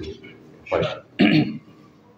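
A man clearing his throat twice into a handheld microphone, two short, loud rasps about half a second apart.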